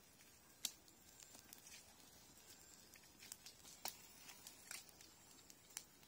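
Near silence, broken by a few faint, scattered clicks and light rustles; the sharpest comes under a second in.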